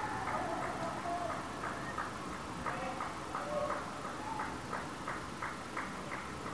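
Birds chirping: many short, irregular chirps with a few falling whistled notes over a steady open-air hiss.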